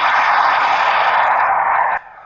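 BD-5 FLS Microjet's small jet engine heard as it flies past: a loud, steady rushing noise with no clear pitch, which starts and cuts off suddenly.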